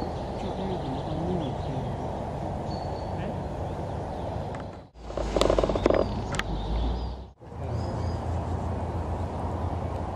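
Outdoor ambience with a steady low rushing noise and a few faint bird chirps. Midway a louder stretch with a few sharp clicks sets in, and the sound cuts out abruptly twice.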